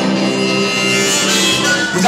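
Electric guitar playing held, ringing notes in an instrumental gap of a live song.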